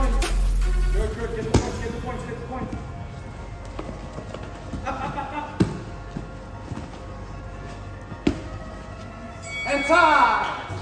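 Background music with heavy bass that drops away about a second in, then grapplers' bodies landing on a foam mat, with three sharp thumps spread through and a louder burst of sound right at the end.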